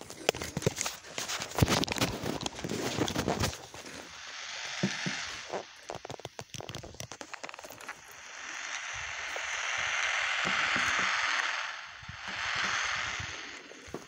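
Crackling and clicking from a handheld magnetic pickup microphone, then a hiss that swells for a few seconds and rises again near the end. The user takes it for the receiver picking up a nearby cell phone's signal.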